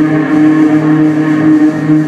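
Live rock band's amplified instruments holding one steady, low droning chord, with no drum beats.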